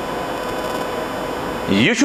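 A steady background hiss with a faint, even hum running under it. A man's voice starts speaking near the end.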